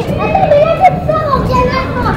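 Children's high-pitched voices calling out while playing, one voice gliding up and down in pitch.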